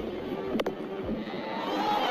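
Cricket bat striking the ball with a sharp crack about half a second in, then stadium crowd noise swelling into a cheer near the end at the big hit.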